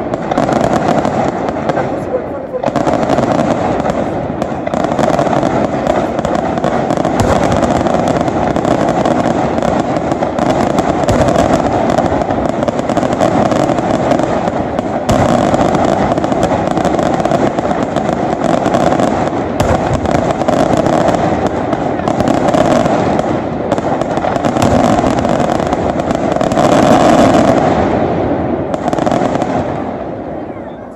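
Daytime fireworks going off in rapid, continuous succession close to the ground: a dense run of crackling and bangs that keeps up without a break and begins to fall away near the end.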